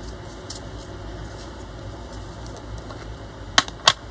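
A screw-top jar of craft paste being opened by hand, with faint handling noise, then two sharp knocks close together near the end as the jar and its lid are set down on a cutting mat.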